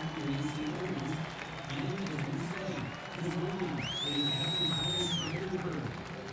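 Stadium crowd noise: a mass of voices talking and calling with some applause. High whistles rise over it, the loudest and longest about four seconds in, held for over a second.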